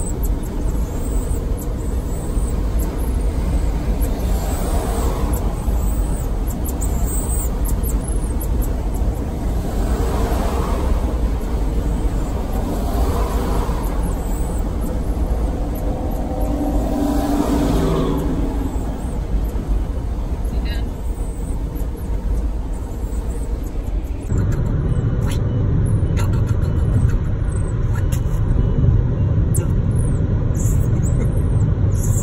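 Steady low road and engine drone inside a semi-truck cab at highway speed, with faint voices coming and going over it. About three-quarters of the way through, it cuts to a different, car-interior road rumble.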